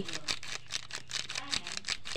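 Plastic seasoning sachet of powdered chicken stock rustling in the hand as it is tipped out over water in a pan: a rapid, irregular run of small crisp clicks.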